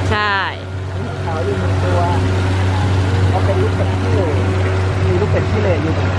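Steady splashing of a pond fountain with many ducks calling in short repeated bursts, and one louder, higher call right at the start.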